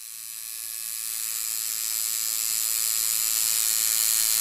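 Electric tattoo machine buzzing steadily, fading in over the first couple of seconds and then holding.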